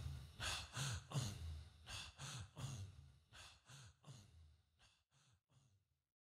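Rhythmic breathy vocal chanting: a short breathed, voiced syllable repeated about three times a second, fading out over the last seconds.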